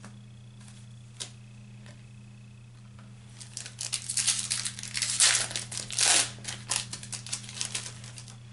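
A baseball card pack wrapper being torn open and crinkled by hand. It comes as a dense run of uneven crackles starting about three and a half seconds in and stopping just before the end.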